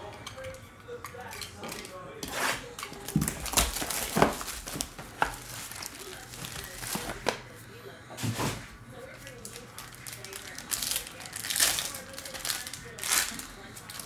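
Foil trading-card pack crinkling and tearing open, with plastic wrapper rustling and handling knocks from the card box, in an irregular run of sharp crackles.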